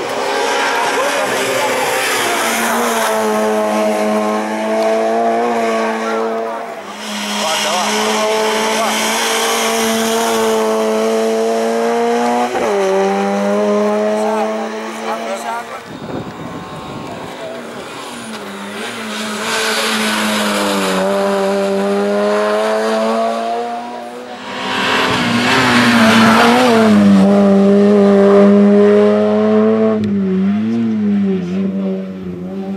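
Racing hatchback's engine held at high revs as it climbs a hill-climb course, a steady high engine note. The note drops briefly several times at gear changes and lifts, and is loudest near the end as the car comes close.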